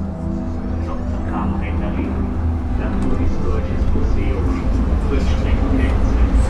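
A low traffic rumble that grows louder, with indistinct voices in it; held musical tones fade out right at the start.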